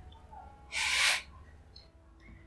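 A single short, sharp breath of air from a man: a hiss lasting about half a second, a little before the middle.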